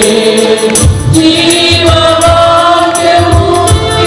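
Church choir of men and women singing a Telugu Christian worship song into microphones, over an accompaniment with a steady percussive beat and bass.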